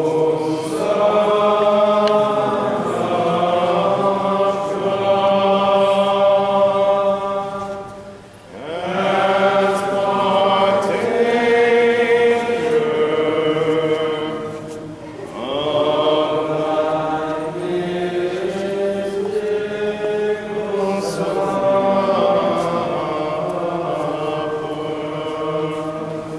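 Byzantine liturgical chant sung during Holy Communion: long, held sung phrases, breaking briefly about eight and fifteen seconds in.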